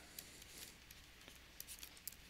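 Near silence with a few faint, short ticks and scratches of a pen stylus writing on a graphics tablet.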